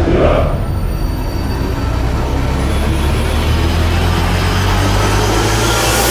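Cinematic soundtrack drone: a steady deep rumble with a hiss that slowly builds and brightens, then cuts off suddenly at the end.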